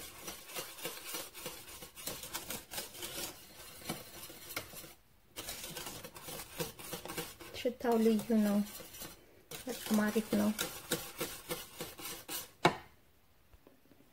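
Wire whisk beating thick pastry cream in a stainless steel pot: a fast run of scraping clicks as the wires hit the pot's sides, breaking off briefly about five seconds in and stopping about a second and a half before the end.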